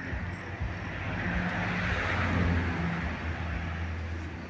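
A passing vehicle: its noise swells to a peak about two seconds in, then fades away.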